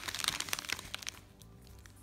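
Crinkling of a plastic dog-treat packet being handled, busiest in the first second and then dying away, over faint background music.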